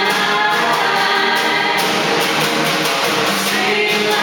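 Male and female voices singing a pop-rock song in harmony over strummed acoustic guitar, with a snare drum keeping a steady beat.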